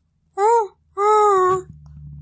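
A high voice wailing twice: a short rising-and-falling call, then a longer, steadier one that sinks slightly at the end. A low steady hum comes in near the end.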